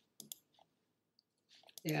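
A few short, faint clicks in a small quiet room, then a single spoken 'yeah' at the end.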